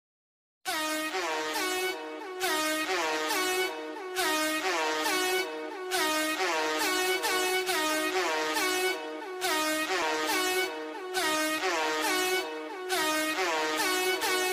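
Opening of a trap track: a pitched lead melody plays the same short phrase over and over, roughly every second and a half, with no bass under it. It starts after a moment of silence.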